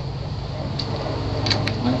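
A steady low background hum, with two faint clicks about one and a half seconds in.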